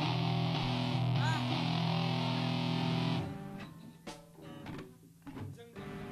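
A distorted electric guitar chord played through an amplifier during a soundcheck, held and then cut off about three seconds in, followed by a few short picked or muted notes. A steady low tone comes back near the end.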